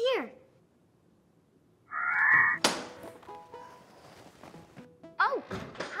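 A short rasping burst, then a sharp thunk with a brief ringing tail, followed by soft background music with held notes.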